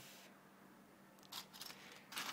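Near silence, with a few faint brief clicks and rustles about a second and a half in from pieces of scrap circuit board being handled.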